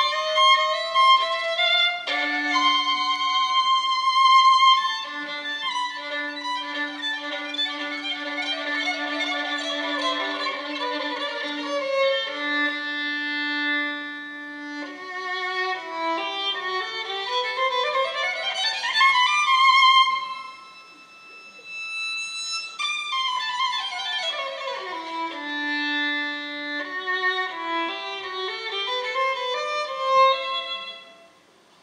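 Solo violin playing a virtuoso passage on its own: a melody over a long-held low note, then fast scale runs that climb and fall again, with a short quieter spell about two-thirds of the way through.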